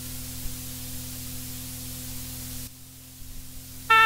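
Cassette tape hiss with a low mains hum in the silent gap between two songs of a tape transfer; the hiss and hum drop to a quieter level about two-thirds of the way through.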